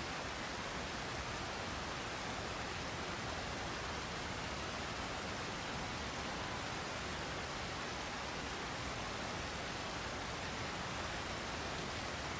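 A large waterfall's steady rushing roar, an even unbroken wash of water noise.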